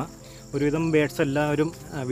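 A man talking, with a faint steady high-pitched insect drone behind him.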